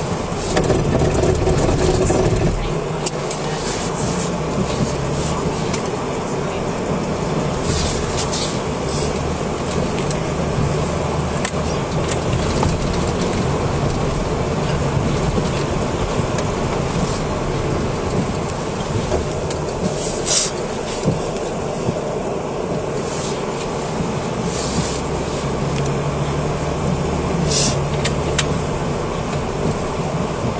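Patrol car driving on a snowy road, heard from inside the cabin: a steady low engine and road rumble, with a few short clicks and knocks at irregular moments.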